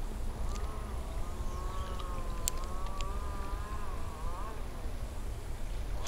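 Spinning reel being cranked during a lure retrieve: a faint gear whine that wavers in pitch with the turning of the handle for about four seconds, then stops.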